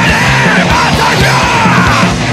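Hardcore punk/metal band playing loud and fast, with rapid drum hits under a dense band sound and shouted vocals.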